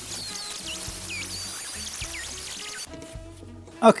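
Flex-shaft rotary tool with a small grinding stone cutting a slot into a plastic battery box: a high, hissing grind with wavering squeals that stops about three seconds in. Background music plays underneath.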